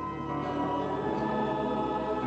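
A choir singing a slow Taizé chant in sustained chords, moving to a new chord about half a second in.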